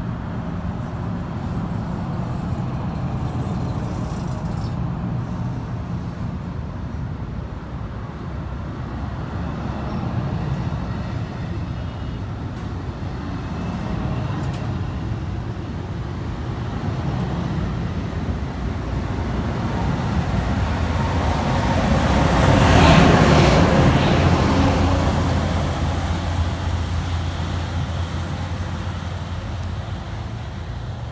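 NJ Transit multilevel passenger coaches rolling past with steady wheel and rail noise, pushed by an ALP-45DP dual-mode locomotive running on diesel. The sound builds to its loudest about two-thirds through as the locomotive at the rear goes by, then a steady low engine hum carries on as it moves away.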